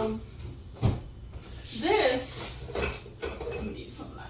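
Kitchen clatter as food is taken out of a fridge: a sharp knock about a second in, then light clinks and rummaging, with a short vocal sound near the middle.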